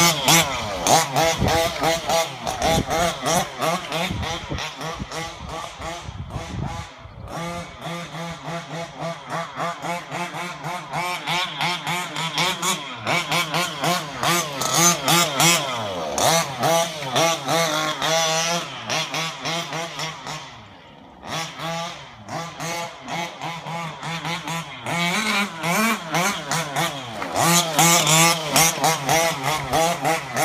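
Petrol RC buggy's ESP G340RC 34cc two-stroke engine on an HPI Baja 5B, revving up and down over and over as the car is driven. The engine drops back briefly about seven seconds in and again around twenty-one seconds in.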